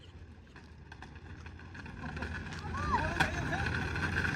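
Electric kick scooter rolling toward the listener over rough asphalt, a low rumbling hum that grows steadily louder as it nears, with a steady whine coming in late. Faint voices are heard briefly about three seconds in.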